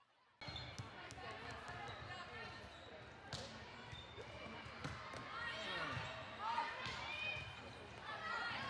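Indoor volleyball play in a large hall: a volleyball bounced on the court before the serve, a sharp hit about three seconds in, and sneakers squeaking on the court later on, over voices from players and spectators. The sound starts after a brief dropout.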